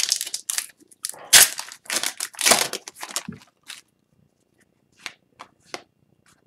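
Foil wrapper of an Upper Deck hockey card pack crinkling and tearing, in a run of rustling bursts over the first four seconds or so, followed by a few light clicks of cards being handled.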